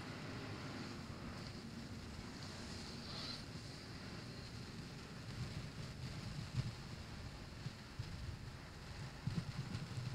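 Quiet open-air ambience: a low, uneven rumble of wind on the microphone, with a few faint bumps near the end.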